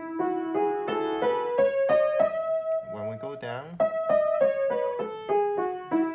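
Upright piano playing the E major scale with the right hand, one note at a time: up one octave from E to E, then back down to the starting E.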